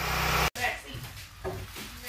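A steady low engine drone at idle that cuts off abruptly about a quarter of the way in, leaving quieter interior room sound with faint voices.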